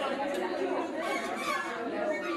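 Many people talking at once: overlapping chatter of a group in a room.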